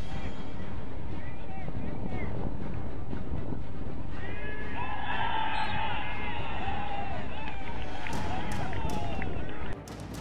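Players and onlookers on an outdoor soccer pitch shouting and calling over wind rumble on the microphone. Several voices get louder from about halfway through as play goes in front of the goal. It cuts off just before the end.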